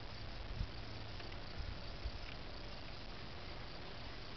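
Steady, even chirring of field insects such as crickets, with a few faint ticks.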